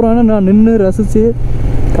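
A man talking, breaking off about a second and a half in, over the steady low rumble of a motorcycle engine and wind while riding.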